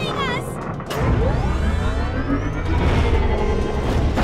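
Background music for a cartoon action scene, with a deep rumble and rising sweeping sound effects setting in about a second in; a brief voice cries out at the very start.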